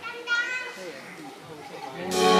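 Indistinct voices murmuring, with one brief, high-pitched shout about a third of a second in.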